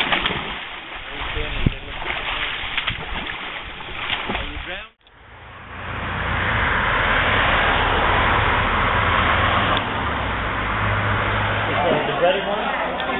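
Water splashing in an above-ground swimming pool as someone flips in backward, with people's voices. About five seconds in the sound cuts off abruptly and gives way to a steady rushing noise with a low hum.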